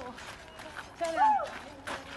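Women's voices with a drawn-out vocal call that rises and falls about a second in, over shoes scuffing and stepping on loose gravel as they dance.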